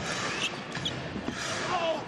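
Court sound of a live basketball game in a large, half-empty arena hall: a ball bouncing on the hardwood floor, players moving on the court, and scattered background voices.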